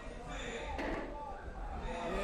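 Voices talking in a large sports hall, with one sharp thud just under a second in: a taekwondo kick landing on a fighter's body protector and scoring.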